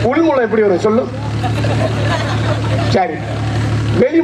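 A man's voice through a stage microphone and loudspeaker, over a steady low hum.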